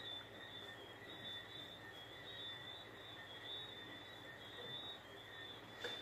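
Quiet room tone: a faint hiss with a thin, steady high-pitched whine, and one tiny tick near the end.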